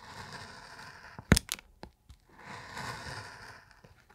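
A hand carving gouge cutting through a linoleum block: two stretches of soft scraping as the blade ploughs through the lino, with two sharp clicks between them about a second and a half in.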